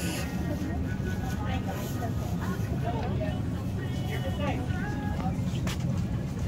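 Supermarket ambience: indistinct shoppers' voices in the background over a steady low hum, with a few light clicks.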